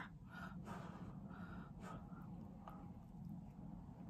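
Faint breathing close to the microphone, with a few soft breaths and two or three light clicks of cutlery on food and plate.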